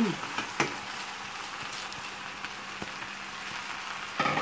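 Oil rice sizzling in its pot on the stove: a steady, even frying hiss, with one light knock about half a second in.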